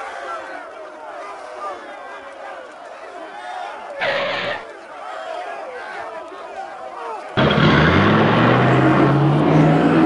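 Background chatter of a crowd of voices, with a short burst of noise about four seconds in. A little past seven seconds a loud car engine sound starts abruptly and rises in pitch as it revs.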